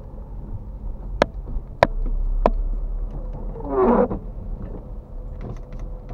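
Inside a slowly moving car: a steady low engine and road rumble, with three sharp clicks in the first half and, about four seconds in, a short pitched sound that rises and falls.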